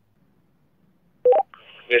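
Two-way radio: near silence, then about a second in a short two-note beep stepping up in pitch as a transmission opens, followed by the hiss of the open channel and a voice starting right at the end.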